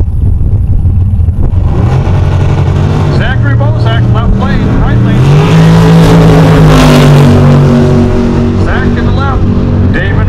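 Two drag racing cars making a side-by-side run down the drag strip. Their engines build to a loud peak as they pass about six to seven seconds in, then fall in pitch as they pull away down the track.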